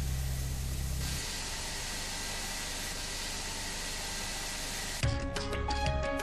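Steady hiss of a grinder sharpening a steel pencil-sharpener blade under coolant, with a low hum in the first second. About five seconds in, music with ringing notes and sharp clicks takes over.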